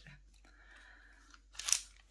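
A tape measure being pulled off a crochet doily and reeled back in: a steady rushing, then a single sharp snap near the end.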